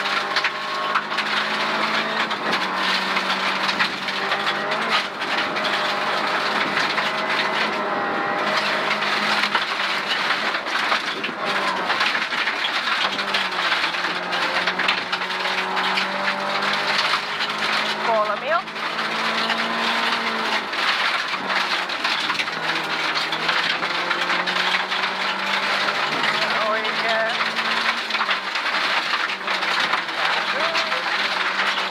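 Rally car engine running hard on a gravel stage, heard from inside the cabin, its pitch stepping up and down with gear changes. A constant hiss of tyres on gravel runs underneath, with many sharp clicks of stones hitting the underbody.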